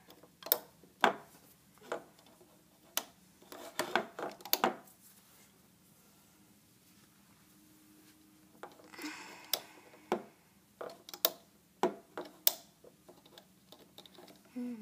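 Irregular sharp clicks and taps of rubber loom bands being stretched over and snapping onto the plastic pegs of a rubber-band loom. There is a quiet pause in the middle, then a brief rustle and more clicks.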